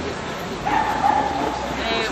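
A high-pitched drawn-out call, held for just under a second from about a third of the way in, over the hubbub of voices.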